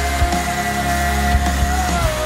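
Loud rock music: a long held note over a driving drum beat with distorted guitars.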